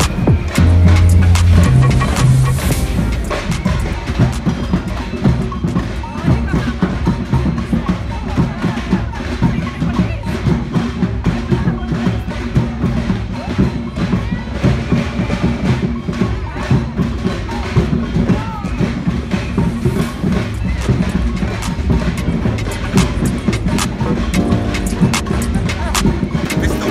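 Live carnival parade music with a steady drum and percussion beat, with voices of the crowd mixed in.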